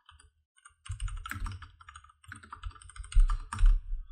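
Typing on a computer keyboard: a quick run of keystrokes starting about a second in, with two heavier strokes near the end.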